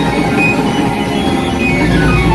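Live funk-rock band playing loudly, a dense mix of drum kit, electric guitars and keyboards with falling pitch glides.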